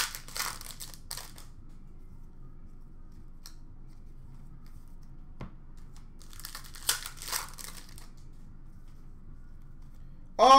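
Foil trading-card pack wrappers crinkling and being torn open as cards are handled. It rustles at the start and again about seven seconds in, with a few light clicks between.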